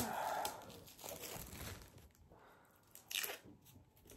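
Thin clear plastic wrapping crinkling and tearing as it is pulled off a Funko Pop's cardboard box, with a sharp crackle about three seconds in.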